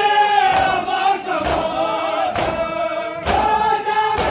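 Men's voices chanting a noha, an Urdu lament, in unison, with hands striking bare chests in matam in time with it, about one heavy slap a second.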